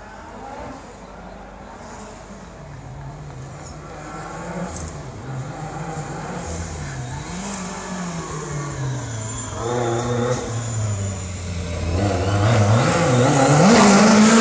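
Lancia Delta S4 Group B rally car's turbocharged and supercharged four-cylinder engine revving hard on approach. The note rises and falls again and again with throttle and gear changes, growing steadily louder until the car is close by near the end.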